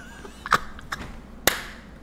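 Two short, sharp impact sounds about a second apart, with a fainter tick between them, over low background hiss.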